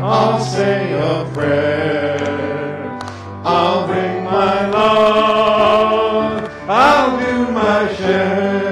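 Church congregation singing a song with instrumental accompaniment, in phrases of held notes with short breaks between them.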